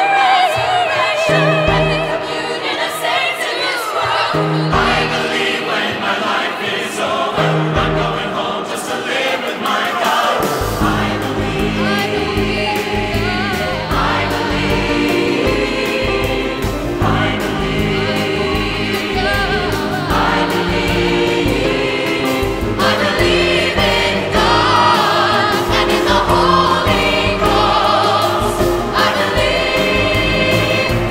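Gospel choir singing with a female soloist, accompanied by piano. About ten seconds in, the accompaniment fills out with a steady low bass beneath the voices.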